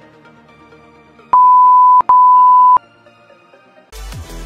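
Two loud, steady electronic beeps of one pitch, like a censor bleep, each lasting about three-quarters of a second and sounding back to back a little over a second in, over quiet background music.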